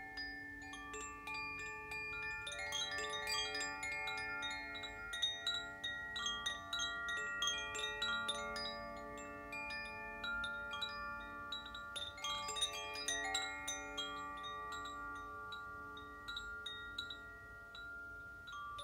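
Wind chimes ringing, with many struck notes overlapping and sustaining, and denser flurries of strikes about three seconds in and again about twelve seconds in.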